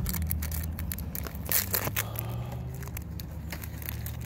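A foil Magic: The Gathering set booster pack being torn open and its wrapper crinkled, in a run of short crackles that are thickest about halfway through. A low steady rumble runs underneath.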